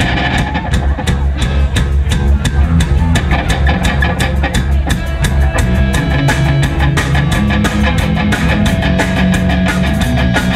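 A rock band playing live: electric guitars through Marshall amplifiers, bass and a drum kit keeping a fast steady beat of about four hits a second.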